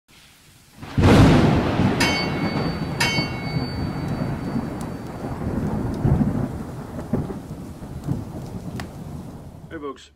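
Thunderstorm sound effect: a loud thunderclap about a second in, followed by steady rain that slowly fades. Two ringing clangs come a second apart soon after the thunder.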